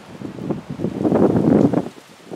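Wind buffeting the microphone, a gusty rumble that builds to its loudest about a second in and drops away just before the end.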